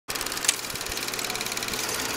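Film projector running, a rapid, even mechanical clatter of film passing through it, with one sharper click about half a second in.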